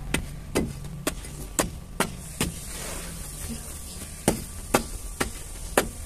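A small hand-held object struck repeatedly against hardened lumps of dried red dirt to break them, sharp knocks about twice a second with a pause of more than a second in the middle, ten strikes in all. The dirt has dried hard and will not crumble by hand.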